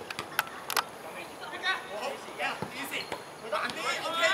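Footballers' voices calling out to one another during play, with a quick run of sharp knocks in the first second.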